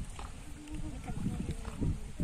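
Indistinct human voices over a steady low rumble.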